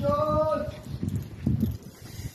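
A man's voice calls out in one held, steady note for about half a second, followed by a run of low, irregular knocks and thumps.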